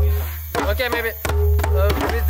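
Djembe hand drums struck in a group, with scattered sharp strokes. Voices talk over the drumming, and a steady low hum runs underneath.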